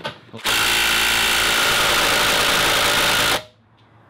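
Cordless DeWalt impact gun hammering on a steel nut that has all but stalled, with the fin-head bolt crushing into the oak and the nut hardly turning. It runs loud and steady for about three seconds, starting about half a second in, then stops suddenly.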